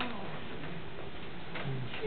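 Pause in the talk: room noise with faint voices from people in the room, and a short low hum near the end.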